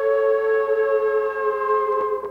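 Experimental electronic music: a held chord of several steady tones, sliding slowly and slightly down in pitch.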